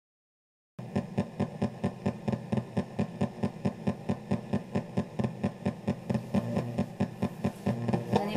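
PSB7 ghost box sweeping the radio band, played through a karaoke machine's speaker: a rapid, even chopping of static and radio fragments, several pulses a second, starting about a second in.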